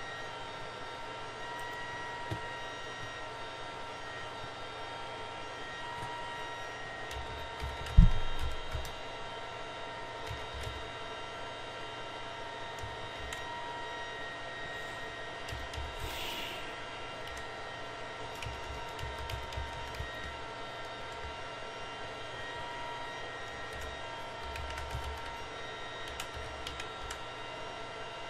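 Steady background hum of machine noise with faint steady whining tones, and a single loud thump about eight seconds in.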